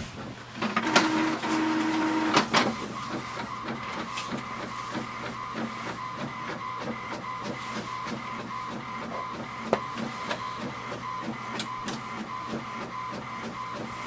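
HP Envy 5034 inkjet printer starting a print job. A louder motor whir lasts about two seconds and ends in a click, then the printer runs more quietly and steadily as it feeds the paper and prints.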